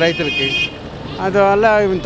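A man talking on a street with a steady background of traffic; a steady high tone, most likely a vehicle horn, sounds over the start and cuts off abruptly under a second in.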